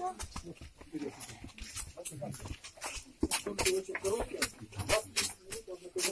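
Footsteps of people walking on the stone floor of a limestone catacomb tunnel: a run of irregular sharp clicks and scuffs, with indistinct voices in the background.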